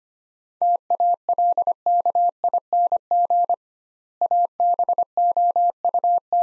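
Morse code at 25 words per minute: a single steady tone keyed in short and long elements, sending the phrase "talking about" again right after it was spoken. The tone spells out two words separated by a widened pause of about half a second.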